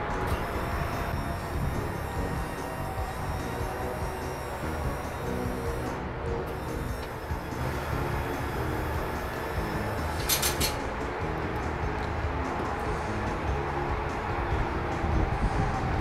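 A Braun folding wheelchair lift's motor running steadily as the platform rises and folds up into the van's doorway, under background music. A brief high hissing burst comes about ten seconds in.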